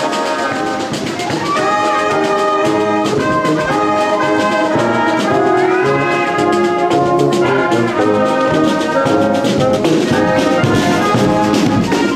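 Marching brass band playing a tune, with trumpets, trombones and a sousaphone over steady drum beats.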